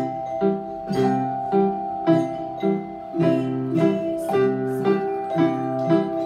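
A children's ensemble of Orff metallophones, metal bars struck with mallets, playing a simple repeating pattern at about two strokes a second, the notes ringing on and overlapping.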